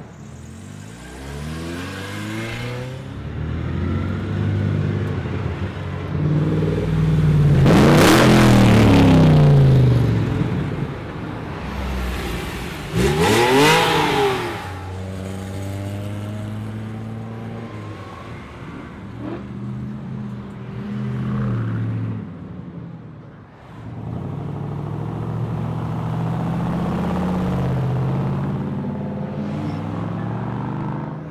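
Sports and classic cars accelerating past one after another, their engines rising in pitch as they pull away. Two go by loudest, about eight and thirteen seconds in, their pitch dropping sharply as they pass.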